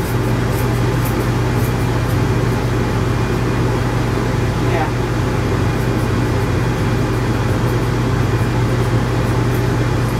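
A steady machine drone: a low hum over an even hiss, running unchanged, with one short rising squeak about halfway through.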